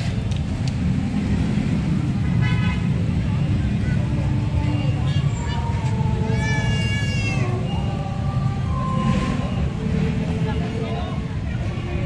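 Crowd of people talking, many voices overlapping over a steady low rumble. A short, high-pitched cry with a wavering pitch rises above the chatter about six and a half seconds in.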